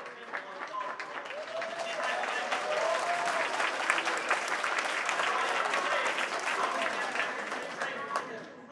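Audience applause, building over the first couple of seconds and fading near the end, with voices over it.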